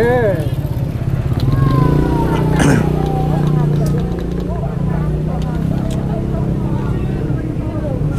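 An engine running steadily with an even low pulse, under faint background voices.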